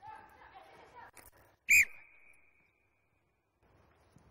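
One short, loud blast on a coach's whistle a little under two seconds in, the signal for the players to drop the ball and race to the other grid. Before it, players' voices call out.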